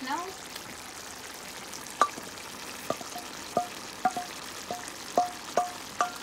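Squash and coconut milk simmering in a stainless steel pot with a steady hiss. From about two seconds in come sharp metallic clinks, about eight of them, each with a short ring, as smoked fish is added to the pot.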